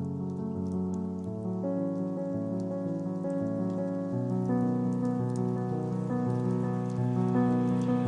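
Lo-fi instrumental music: slow, sustained keyboard chords over a low bass line that change every second or two, with a faint crackling patter on top.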